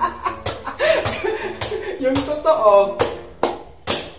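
Kitchen knife chopping into the husk of a green young coconut: several irregular, sharp strikes. Laughter and a few words are mixed in.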